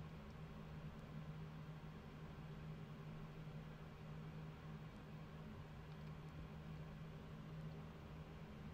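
Faint steady low hum over quiet room tone, with no distinct sounds.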